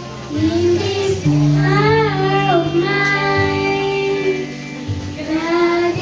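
A child singing a church song over instrumental accompaniment, with long held bass notes beneath the voice.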